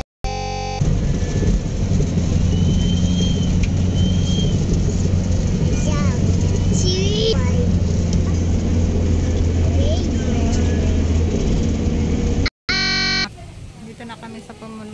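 Steady low engine and road rumble heard from inside a moving road vehicle, with faint voices over it. It cuts off abruptly near the end.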